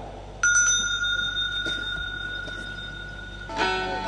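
A small bell struck once, its clear high tone ringing on and slowly fading for about three seconds. Near the end, a plucked string instrument starts playing.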